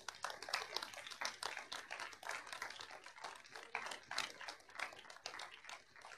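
Audience applauding, many quick irregular claps that thin out and stop near the end.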